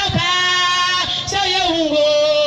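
A woman singing a gospel song into an amplified microphone, holding two long notes, one after the other.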